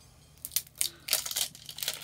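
Sealed packet of loose tea being handled and opened, its packaging crackling in a quick run of short crinkles that starts about half a second in.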